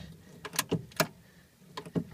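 A few short, sharp light clicks: two together about half a second in, one about a second in and a quick pair near the end.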